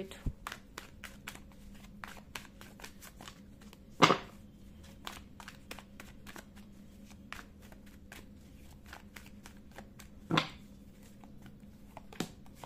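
A tarot deck being hand-shuffled over a wooden table: a fast, continuous run of soft card clicks and riffles. There are two louder knocks, about four seconds in and again near ten seconds.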